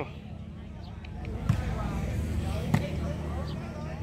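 A volleyball struck by hand twice during a rally: two sharp smacks, about a second and a half and nearly three seconds in, over faint crowd chatter and a low steady rumble.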